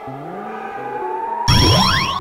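Cartoon score: a held synthesizer tone rising slowly in pitch to build suspense, then a loud burst of rising sweeps about a second and a half in.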